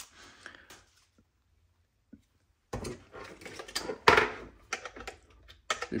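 Near silence for about two seconds, then a run of plastic clicks and knocks from handling a USB power brick and a plug-in power meter as the brick's prongs are pushed into the meter, the loudest knock about four seconds in.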